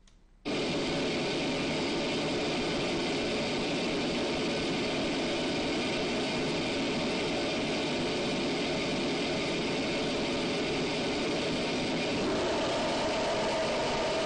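Loudspeaker noise standing in for a fan, radiating through a duct fitted with an empty expansion chamber. It switches on about half a second in, then runs steady as an even rushing noise. The chamber works as a simple reactive silencer, reflecting energy back to the source for about 5 dB of attenuation.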